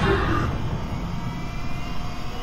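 A steady low roar of fire-and-explosion sound effects under an animated trailer title.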